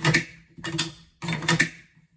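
Sharp clicks and taps of hands handling a magazine and metal rifle chassis, coming in three quick clusters.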